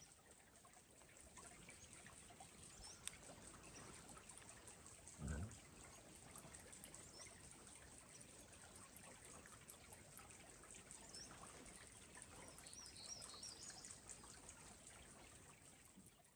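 Faint trickle of a small creek running through burned forest, with a few faint bird chirps, most of them near the end. A short soft low thump about five seconds in.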